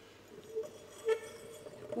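Quiet pause with a faint steady hum, and two soft short sounds about half a second and a second in.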